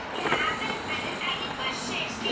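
Music with high-pitched voices from a children's cartoon playing on the television.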